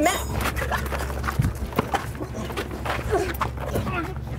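Scuffle of people grappling: many short knocks and scrapes of feet, hands and clothing, with a few short strained vocal sounds.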